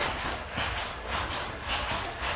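Saree fabric rustling and swishing as a pile of sarees is pulled, spread out and shuffled by hand, in a run of soft repeated swells.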